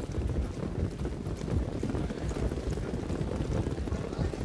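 Hoofbeats of a field of standardbred pacers moving up to the start, a dense steady clatter of many hooves on the track.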